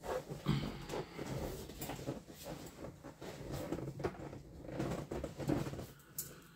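Someone sitting down and shifting in a leather gaming chair: clothing rustling, the chair's padding and frame creaking and knocking, with breathing, in uneven bursts.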